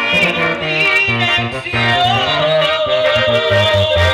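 Live band playing regional Mexican dance music, with a steady rhythmic bass line under the melody; about halfway through, the melody holds one long note.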